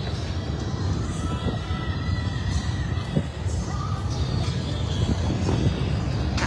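Wind buffeting the phone's microphone in a steady low rumble, with music playing faintly in the background.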